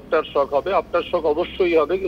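Continuous speech with the thin, narrow sound of a telephone line.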